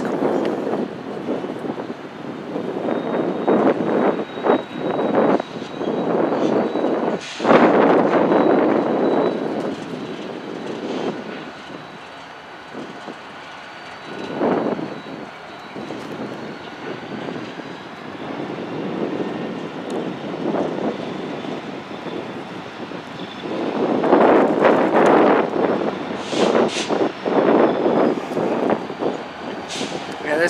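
Union Pacific diesel switch locomotives, a remote-controlled pair, running as they move through the yard. Their engine rumble rises and falls, swelling loudest about seven seconds in and again from about 24 seconds.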